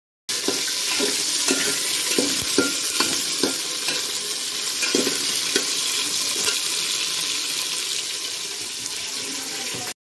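Cauliflower florets sizzling in hot oil in an aluminium pot as they are sautéed for pulao, a steady hiss. A metal spatula stirs them, knocking and scraping against the pot several times, mostly in the first half.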